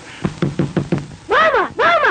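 A quick run of about five knocks, followed by two loud, high cries that each rise and then fall in pitch.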